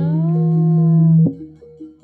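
Jaranan accompaniment music: a long held wailing note over a steady drone, which stops a little over a second in. A quiet figure of two notes, alternating about three times a second, is left.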